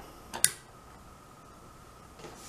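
A power plug clicking into the Bulldog valve's Z-Wave control module: a sharp double click about half a second in, then a faint steady high tone.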